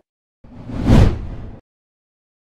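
Whoosh sound effect: a rush that starts about half a second in, swells to its loudest about a second in, and cuts off suddenly.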